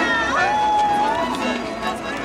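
Music with a singing voice that holds one long note from about half a second in.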